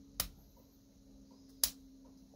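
Plier-style pet nail clipper snipping through a dog's toenails: two sharp clicks about a second and a half apart.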